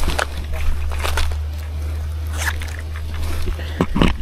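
Steady low rumble on the microphone, like wind or handling noise, with scattered light knocks and rustles from footsteps on a paved path and a fishing rod being carried.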